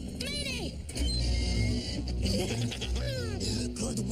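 Animated-series soundtrack: a brief arching voice-like sound at the start, then dramatic background music over a deep rumble from about a second in.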